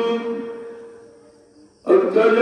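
A man's chanting voice ends on a held note that fades away over about a second and a half, then the chanting cuts back in abruptly near the end.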